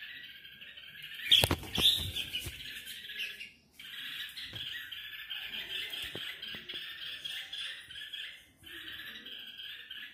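Red-whiskered bulbuls chirping in a rapid, continuous chatter, broken by two short pauses. About a second in, a few loud knocks and rustles cut across it.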